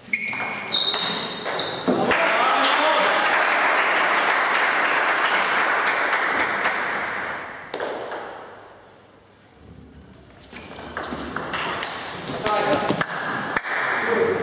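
Table tennis ball clicking off bats and the table in quick exchanges, in the first two seconds and again over the last three and a half. In between comes a loud, steady wash of sound that lasts about five seconds.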